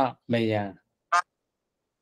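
A man's voice speaking for the first half second, then a single very short, higher-pitched vocal sound about a second in.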